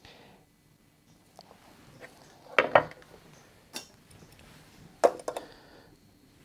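Light clicks and knocks of parts being handled and set down on a guitar body: a straight bar taken off the top and a chrome metal bridge placed on the maple, with small metallic clinks. Two quick knocks come about midway, a single one a second later, and two more near the end.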